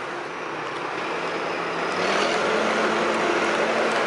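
Backhoe loader's diesel engine running close by, a loud steady mechanical noise that grows louder about two seconds in, with a steady low hum joining it.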